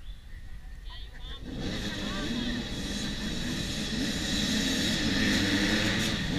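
A pack of mini-class dirt bikes setting off from a race start: many small engines revving together, coming in about a second and a half in and growing steadily louder as they approach.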